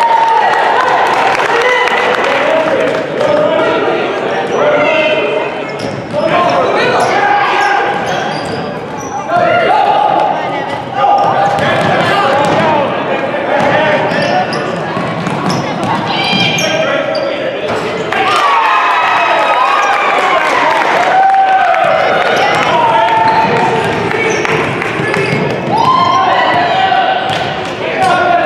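Basketballs bouncing on a hardwood gym floor during a youth basketball game, mixed with frequent shouts from players and spectators, all with the echo of a large gymnasium.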